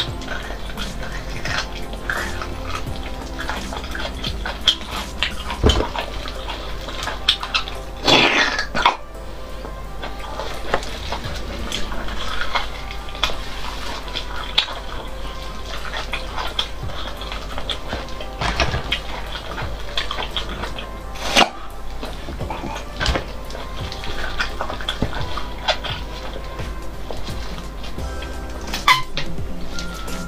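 Wet sucking and slurping at the ends of braised marrow bones, with many short, sharp mouth clicks and a louder stretch about eight seconds in, over background music.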